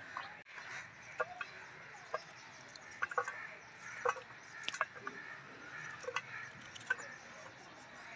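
A knife cutting a guava by hand, with chunks dropping onto a steel plate: irregular sharp clicks about once a second.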